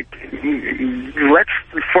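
Speech only: a caller's voice hesitating with a drawn-out filler sound, then going on speaking.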